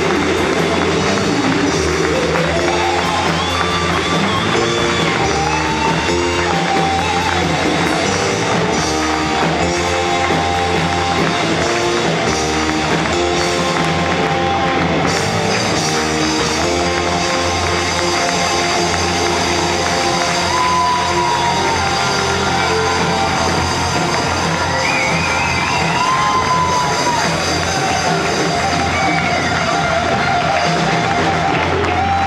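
Live rock band playing: electric bass, keyboard, electric guitar and drum kit, with a melody line that bends in pitch.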